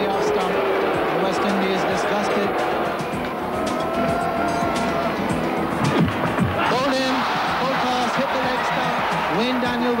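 Steady cricket-ground crowd noise with music running underneath, and a rising pitched sound about six and a half seconds in.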